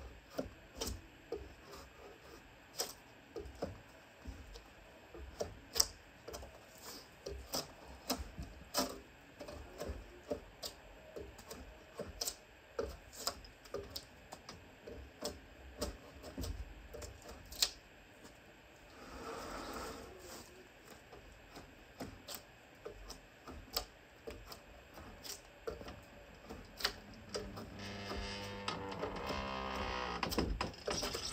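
Drawknife being drawn along a log to peel off its bark, making short scraping strokes and irregular sharp clicks and knocks, about one or two a second, with one longer scrape about two-thirds of the way in. The bark is coming off hard, as it does when logs are peeled in late fall.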